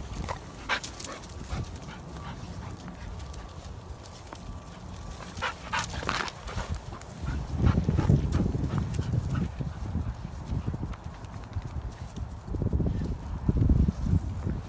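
A dog's sounds with paws and footsteps on dry leaves and grass: a few short sharp sounds come before the middle, then louder low rumbling noise later on.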